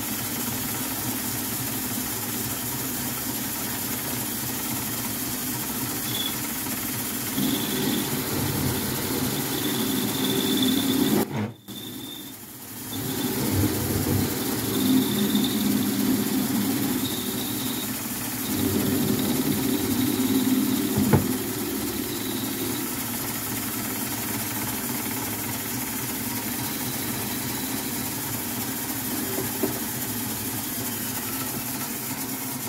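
Metal lathe running, spinning a thin metal pin in its three-jaw chuck while the cutting tool works it. A steady machine hum that swells louder in stretches, with a faint high whine coming and going, and a brief dip in level near the middle.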